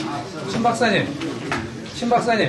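Indistinct voices of several people talking in a room, with no single clear speaker.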